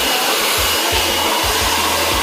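Handheld hair dryer blowing steadily, with a faint high whine over its even rush of air.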